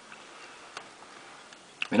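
Faint steady background hiss with one light click a little before the middle, then a man's voice begins right at the end.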